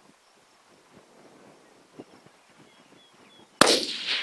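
A single 6.5 Creedmoor rifle shot cracks out near the end after a quiet stretch, its report trailing off in an echo.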